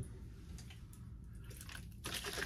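Faint handling sounds: a few soft clicks and rustles as a small aftershave bottle is picked up.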